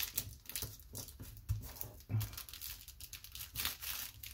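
Paper rustling and crinkling as hands press, rub and shift pieces of paper on a journal page, a run of short scratchy strokes.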